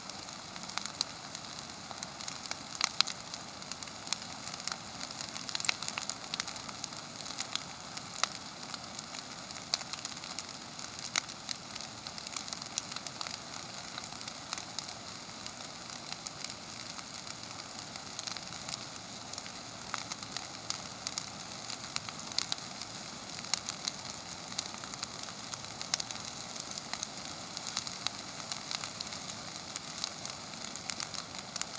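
Brush pile of green juniper bushes burning: a steady hiss of flame with frequent sharp crackles and pops throughout.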